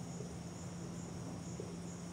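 Quiet background: a steady low hum with a faint high-pitched chirp that repeats two or three times a second.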